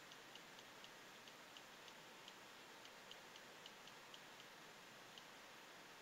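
Faint clicks from a desktop computer mouse's button, about three or four a second at slightly uneven spacing, as short shading strokes are drawn with it.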